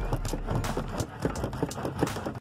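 A spanner working a rusty seat-mounting bolt on a car floor: a quick, uneven run of metal clicks and knocks, several a second.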